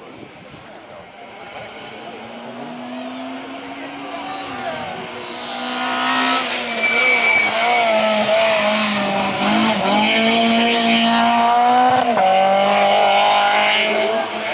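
Citroën C2 R2 rally car's 1.6-litre four-cylinder engine at full stage pace, approaching and growing loud about six seconds in. Its note rises and falls with throttle and gear changes, with two sharp breaks in the second half.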